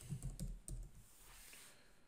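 Faint computer keyboard typing: a short run of keystrokes, mostly in the first second.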